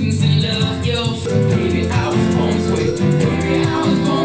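Music: strummed guitar with an egg shaker keeping a steady rhythm.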